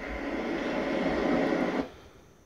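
Recorded ocean surf playing through home theater speakers, a steady rush of noise that cuts off suddenly near the end.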